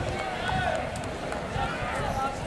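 Spectators calling out at the trackside, with the footsteps of a pack of middle-distance runners on a synthetic track.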